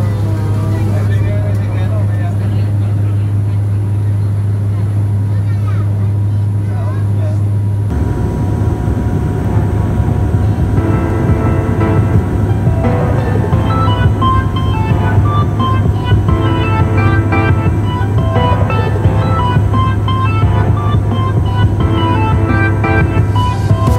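Steady low drone of an aircraft cabin in flight, with voices over it. About eight seconds in it cuts off and background music with a steady beat takes over.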